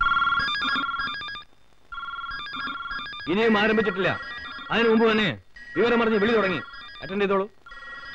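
Desk telephone ringing with a rapid trilling ring: two rings in the first three seconds, then it keeps ringing faintly under a voice that starts about three seconds in.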